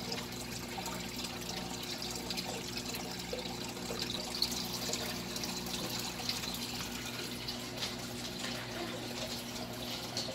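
Aquarium filter running: a steady trickle of water over a low hum.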